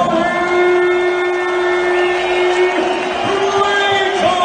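Singing in an arena, heard over crowd noise: one long held note that steps up in pitch about three seconds in.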